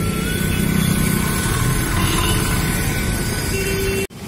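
Road traffic on a city street: cars driving past, a steady low rumble of engines and tyres.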